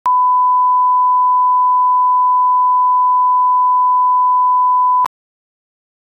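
A steady 1 kHz line-up tone, the reference tone played with colour bars at the head of a broadcast master for setting audio levels: one unbroken pure pitch that cuts off abruptly about five seconds in.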